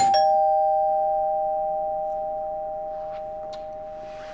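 Two-note doorbell chime, ding-dong: a higher note and then a lower one struck almost together, both ringing on and slowly fading. It signals a visitor at the door.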